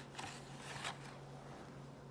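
Faint scraping and rustling of a hard plastic autograph slab being slid out of its cardboard box, mostly in the first second.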